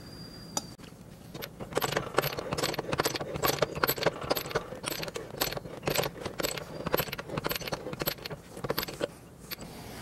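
Keyway broach being pushed through a bore by an arbor press, the sound sped up five times: a rapid, irregular run of metallic clicks as the teeth shear off chips. It starts about a second and a half in and stops just before the end.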